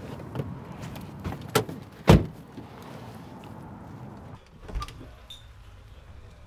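Low, steady rumble of a car's interior with a few clicks, and a loud thud about two seconds in, like a car door shutting. The rumble then drops away and a single door thump follows near the end.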